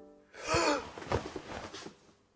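A person's startled gasp, a sharp breathy cry about half a second in, followed by quieter breathing.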